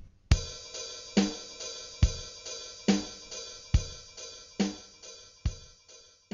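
Programmed MIDI drum pattern played back at 140 BPM through a Yamaha S80 synthesizer's drum kit: a bass drum on the first beat and a snare on the third beat of each bar, under a steady wash of open hi-hats. It starts about a third of a second in.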